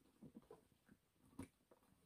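Near silence with faint handling noise from a leather handbag being worked closed: soft taps and rustles, and one sharper click about one and a half seconds in.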